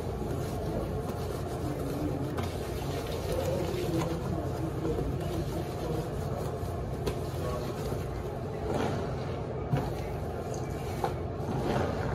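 Wet, soapy fabric being scrubbed and squeezed by hand in a sink, with soft swishes and squelches, over a steady low hum.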